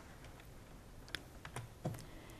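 A few faint clicks of a laptop key, pressed to advance a presentation slide, over quiet room tone.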